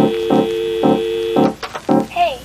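Background music: a held organ-like keyboard chord under short pitched notes repeating about twice a second. The held chord drops out near the end.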